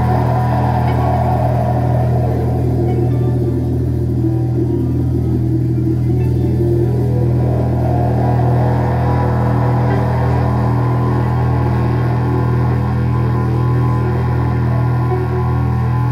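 Psychedelic rock band playing live: a sustained droning passage over a steady deep bass note, with shifting mid-range guitar or synth tones.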